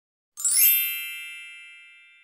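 Intro logo chime sound effect: a bright ding with a quick sparkling shimmer, starting about half a second in, then ringing on and fading slowly.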